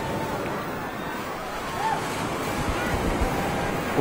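Outdoor ambience from the live feed of the eclipse viewing site: a steady rushing noise with faint, distant voices of the crowd watching totality.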